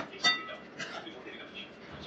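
Metal spoon stirring curry in a metal wok: two sharp clinks against the pan at the start, the second ringing briefly, then softer scraping as the spoon works through the thick curry.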